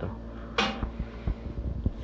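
A few light, sharp clicks and knocks of handling, spaced unevenly through the second half, over a low steady hum.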